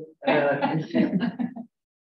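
A person clearing their throat: one voiced throat-clear lasting about a second and a half, which stops abruptly shortly before the end.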